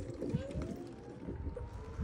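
Electric motor of a Super73 kids' electric balance bike whining as it accelerates. The thin whine climbs steadily in pitch over the first second and a half and then holds, over a low rumble of small tyres on concrete.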